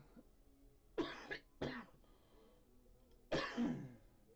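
A person coughing: two quick coughs about a second in, then one more near the end.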